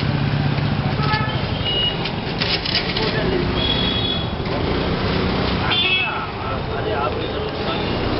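Busy street traffic: motorbike and auto-rickshaw engines running, with several short horn toots and the chatter of passers-by.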